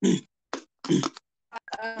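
A woman's hesitant speech: an "uh" and a few short broken-off sounds, with dead silence between them.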